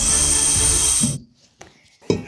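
Air hissing into a stainless-steel vacuum degassing chamber as its release valve is opened, letting the vacuum out after the resin has been degassed. The loud rush of air, with a faint high whistle in it, cuts off suddenly after about a second, followed by a couple of faint clicks.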